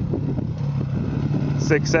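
Single-cylinder four-stroke engine of a 2008 Honda CRF450R dirt bike running steadily at an even, low pitch as the bike rolls down the slope toward the listener.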